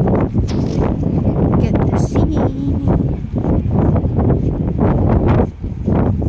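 Wind buffeting the microphone in loud, uneven gusts, with indistinct voices under it.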